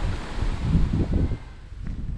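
Strong wind buffeting the microphone in low rumbling gusts, which ease off sharply about one and a half seconds in.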